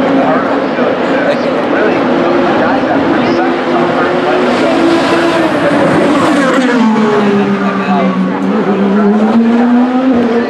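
IndyCar engines, 2.2-litre twin-turbocharged V6s, racing past in a pack, several engine notes heard at once. The notes drop in pitch about six to seven seconds in.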